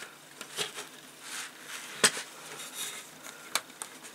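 Plastic parts of a U 96 submarine model kit handled on a workbench: soft rustling and a few light clicks as cables and their connectors are pushed into the plastic hull section, the sharpest click about two seconds in.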